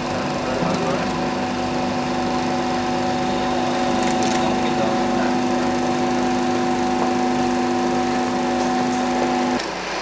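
A sustained musical drone of a few held tones over the steady rattle of running film projectors. The drone cuts off abruptly shortly before the end.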